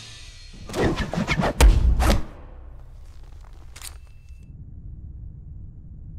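Action-film sound effects for a sword fight: a quick run of sharp hits starting about half a second in, ending in a heavy low boom. A low steady drone follows, with one faint click in the middle.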